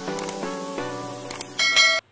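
Short intro jingle of bell-like chiming notes that step from pitch to pitch, with a brighter, louder chime near the end before it cuts off suddenly.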